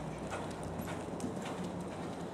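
Hoofbeats of a horse cantering on a soft sand arena surface: a few faint, irregular thuds over a steady low hum.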